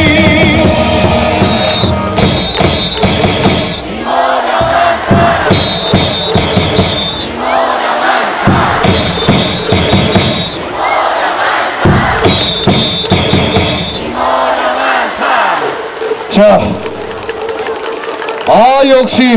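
Amplified baseball cheer song with a large crowd of fans shouting a chant along with it, the crowd's call surging back about every three and a half seconds between musical phrases.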